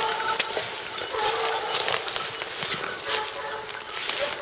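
Porcelaine hounds baying as they trail a hare: about three long, steady-pitched cries, roughly a second or more apart.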